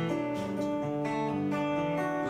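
Acoustic guitar strummed in a live folk song, its chords ringing with no voice over them.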